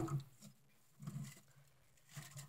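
Near quiet, with a brief faint rustle about a second in.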